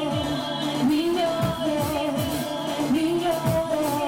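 Live band playing a pop song, a woman singing long held notes into a microphone over electric bass and drum kit.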